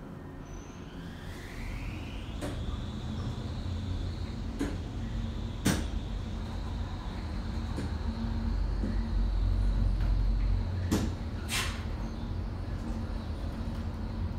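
Richmond traction elevator car travelling down at speed. A whine rises in pitch over the first few seconds as the car picks up speed, then holds steady over a low rumble. Several sharp clicks come through during the run.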